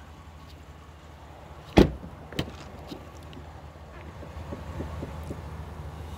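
A pickup truck's door shutting with one sharp thump about two seconds in, followed by a lighter knock and a few small clicks and rustles, over a low steady hum.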